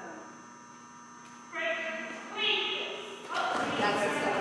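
A dog-agility handler's voice calling out to the dog in short, high-pitched calls, starting about a second and a half in and again near the end, over a faint steady hum.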